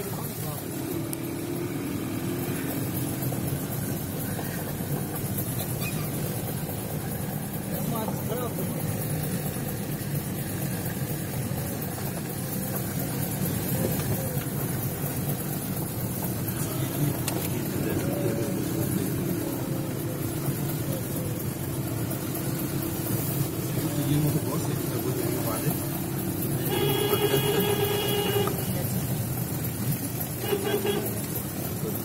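Car driving on a wet, slushy road, heard from inside the cabin: steady engine and road noise. Near the end comes a steady pitched tone lasting about a second and a half.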